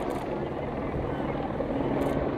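A steady low engine rumble, even in level.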